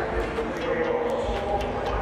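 Indistinct background voices over a steady outdoor din of a busy pit lane, with a faint steady hum.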